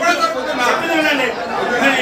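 Several men talking over one another in an agitated argument, in Telugu.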